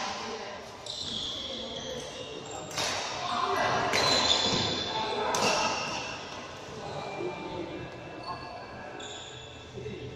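Badminton racket strikes on shuttlecocks, with sharp hits about three, four and five and a half seconds in, and short sneaker squeaks on the court floor, echoing in a large sports hall.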